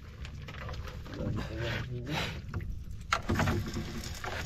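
A wet fishing net being hauled by hand over the side of a small outrigger boat: water splashing and dripping off the net, with scattered rustles and a sharp knock against the hull a little after three seconds in.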